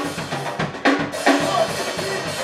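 Live band playing an instrumental passage: a drum kit beats out bass drum and snare hits about twice a second under electric guitar and keyboard. After about a second and a half the drum hits thin out and held notes carry on.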